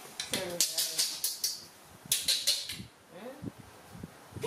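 Crinkly rustling of a plastic bag being pulled about by a young macaque, in two quick bursts of crackling, with a brief voice-like sound near the start and again near the end.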